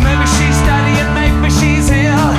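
A live rock band playing: electric guitar over bass and drums with a steady beat, and wavering bent notes near the end.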